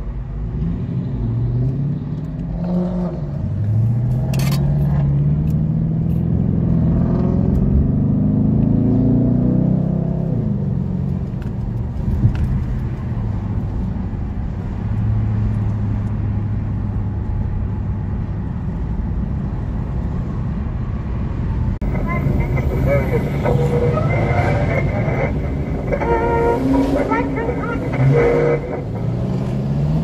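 Car engine accelerating in several rising pulls as it goes up through the gears, then running at a steady cruise, with another rising pull near the end. A stretch of voices is heard in the last third.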